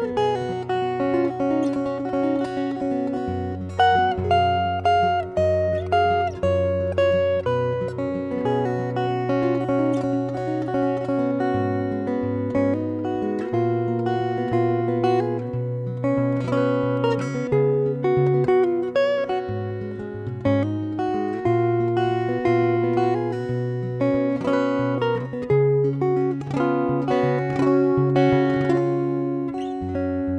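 Solo steel-string acoustic guitar played fingerstyle: a melody of plucked, ringing notes over sustained bass notes, without pause.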